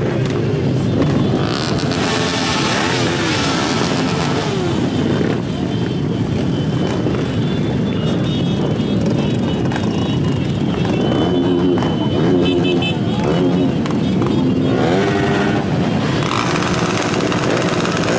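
Many motorcycle engines running together in a packed group, with several bikes revving up and down about two seconds in and again near the end.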